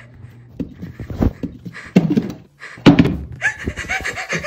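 Heavy thumps from under a bedroom floor, three of them about a second apart, growing louder, followed near the end by a short pitched vocal sound.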